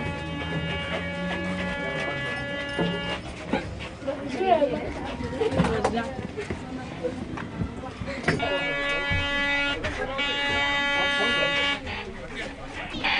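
A checkpoint's electric buzzer sounding twice, a steady buzz of about three seconds each time, the second starting about eight seconds in; voices in between.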